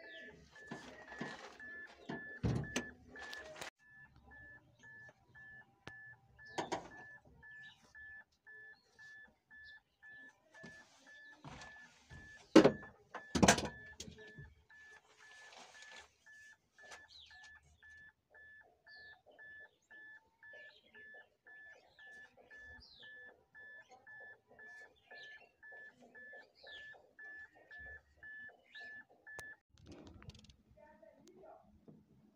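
An electronic warning beeper sounding a steady high beep about twice a second, which stops just before the end. Several loud handling knocks and clicks come over it in the first half.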